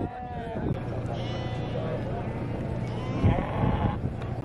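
Sheep bleating several times in a crowded livestock market, over the background chatter of people.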